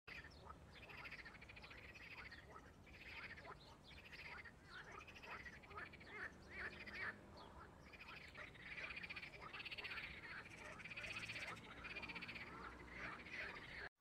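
Frogs calling faintly: a continuous run of short, repeated croaking calls, a few each second.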